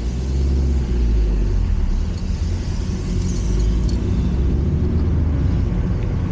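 Car engine and road rumble heard from inside the cabin, a steady low drone that grows louder just after the start as the car pulls away and drives on.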